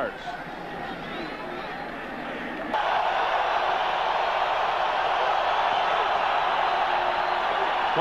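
Crowd noise from a packed football stadium: a steady hubbub of many voices. It jumps abruptly louder about three seconds in, at a cut in the broadcast, and then holds level.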